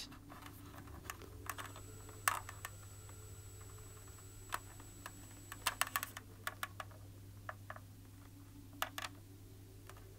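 Steady low electrical hum with a faint high whine through the middle, broken by irregular clicks and ticks: the mains interference picked up on an analogue synth recording, with the mains conditioner in place making no difference.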